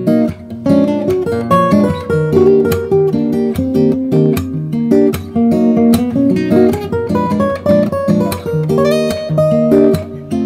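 Cutaway acoustic guitar played with the fingers: jazz chords plucked in a lively, syncopated rhythm, several attacks a second, with the thumb and three fingers striking the strings together in chord grabs.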